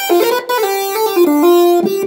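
MainStage 3 'Electric Buzz' synthesizer patch played from a keyboard: a short phrase of held notes, several sounding together and changing every fraction of a second, stopping just before the end.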